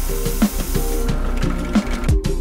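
Electronic background music with a steady beat. Over it, for about the first second, a hissing rasp of a sanding drum in a drill press grinding wood; it then fades.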